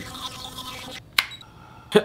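Philips Sonicare 6500 sonic electric toothbrush buzzing steadily while brushing teeth, with wet brushing sounds. It stops about a second in, and a single sharp click follows.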